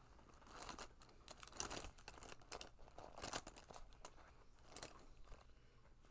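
Faint rustling and light, irregular clicks of makeup brushes being rummaged through and picked up.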